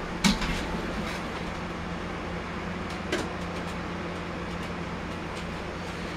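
Steady background hum with two brief knocks, one just after the start and one about three seconds in.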